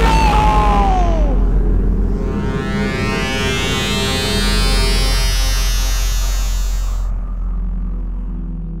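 Electronic synthesizer score with sound effects: falling pitch glides in the first second or so, then a long rising sweep that builds and cuts off suddenly about seven seconds in, over a steady low drone.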